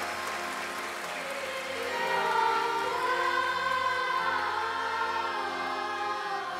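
Applause dies away, then a choir starts singing long, sustained notes about two seconds in, with musical accompaniment.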